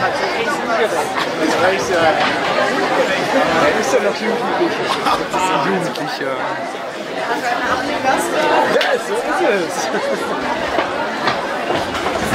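Audience chatter in a hall: many voices talking over one another at a steady level.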